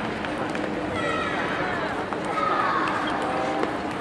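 Voices calling out in a large, echoing table tennis hall over a steady hum, with a few faint clicks of table tennis balls.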